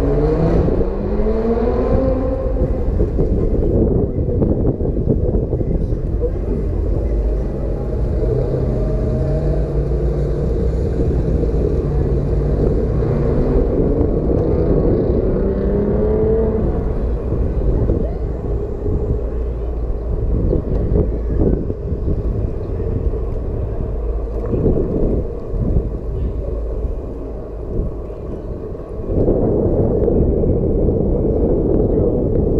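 Wind rumbling over the helmet-mounted microphone while riding a motorbike, with the bike's motor rising in pitch as it accelerates in the first few seconds, holding a steady tone, then rising again about halfway through.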